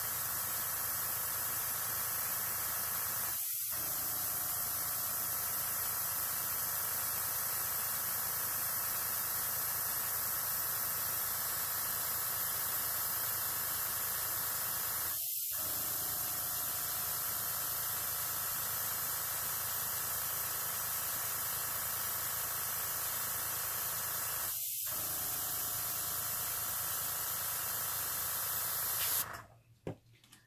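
Master Airbrush gravity-feed airbrush blowing a steady hiss of compressed air over alcohol ink on paper. The hiss cuts off sharply about a second before the end.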